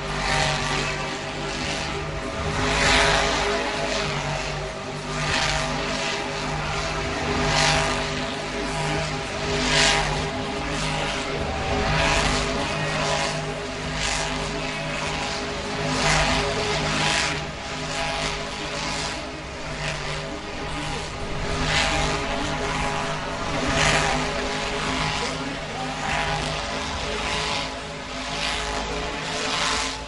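Monster truck engine at full throttle, its revs surging every couple of seconds as the truck spins donuts in loose dirt.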